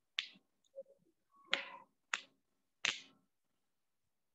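A few short, sharp taps, irregularly spaced about half a second to a second apart, faint overall.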